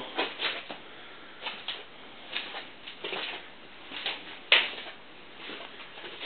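Footsteps and camera handling noise in a workshop, with irregular scuffs and rustles and one sharp click about four and a half seconds in. No machine is running.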